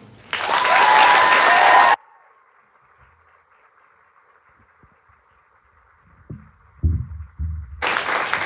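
Loud audience applause breaks out at the end of a choir's song and cuts off abruptly after about two seconds. A few low thumps follow near the end.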